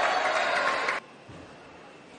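A loud, drawn-out celebratory shout after winning a table tennis point, falling in pitch and cutting off abruptly about a second in, leaving only faint hall background.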